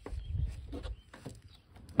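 Low rumble of wind and handling noise on a phone microphone, with a few faint clicks, ending in a sudden loud thump.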